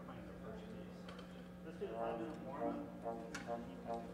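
Faint, indistinct talking in a large hall over a steady low hum, with one sharp click late on.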